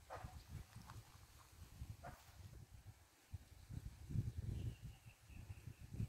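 Faint outdoor ambience: an uneven low rumble of wind on the microphone, with two short animal calls falling in pitch about two seconds apart and a faint high chirping later on.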